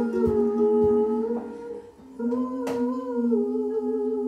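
Live indie-soul band in the song's closing bars: female voices humming long wordless notes over keyboard and cello. The notes drop away briefly about halfway, come back, and a single sharp percussive hit lands just after.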